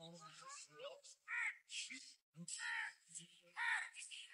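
Faint cawing of crows: about five short, harsh calls at irregular intervals.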